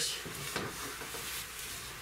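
Faint rustling and small handling noises from a padded jacket and wires being worked overhead, with a few light ticks in the first half second.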